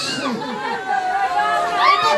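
Several people's voices overlapping in a crowd, calling out at once, with one long held cry from about halfway in.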